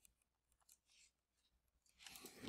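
Near silence, with faint, irregular scratching of a stylus writing on a tablet screen.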